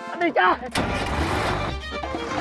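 A short shouted voice, then, under a second in, a van's engine starting up and running with a steady low rumble.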